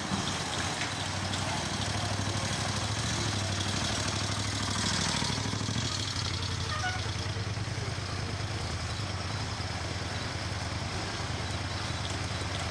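Engines of a motorcycle and following cars running slowly in low gear behind a group of cyclists climbing a hill: a steady low hum under a steady hiss, swelling slightly about five seconds in.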